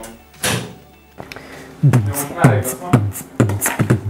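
A microwave oven door shut with a single thump about half a second in, then background music with a steady beat, about two beats a second, starting about two seconds in.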